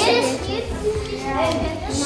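Several children talking at once in a classroom, a busy chatter of young voices.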